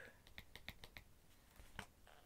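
Faint clicks and light rustling of paper programme pages being handled, in near silence: a quick run of small ticks in the first second and one more near the end.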